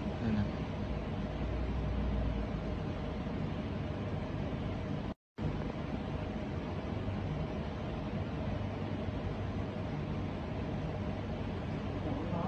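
Steady low rumbling background noise, broken by a brief total dropout about five seconds in.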